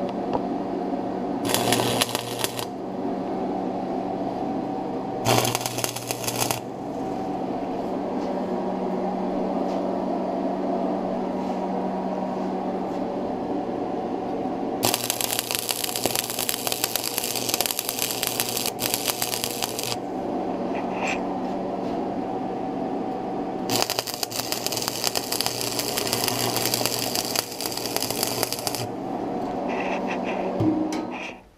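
Wire-feed welder arc crackling in four runs: two short tacks of about a second each early on, then two longer beads of about five seconds, as a square steel tube is welded into a large steel nut. A steady hum continues underneath between the welds.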